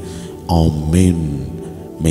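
Background music of steady sustained low chords, with a voice briefly heard about half a second in, fading toward the end.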